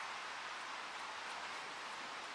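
Steady hiss of background noise, even throughout, with no distinct mechanical event.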